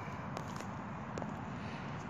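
Steady low background rumble, with a few faint clicks about half a second and a second in.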